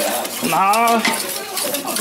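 A utensil stirring thick béarnaise sauce in a large stainless steel pot, clicking and scraping repeatedly against the pot's sides as melted butter is beaten into the egg base.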